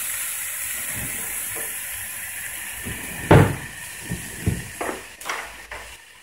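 Chicken and vegetable skewers sizzling on a hot ridged grill pan, a steady hiss that fades near the end. One loud knock comes about halfway through, and a few lighter knocks follow.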